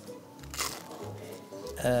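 A person biting into a toasted sandwich with one crisp crunch about half a second in, over background music.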